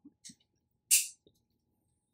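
Swallowing sips of root beer from a glass bottle, with a short breathy hiss of an exhale about a second in.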